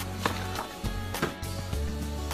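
Background music with a steady bass line and a regular beat.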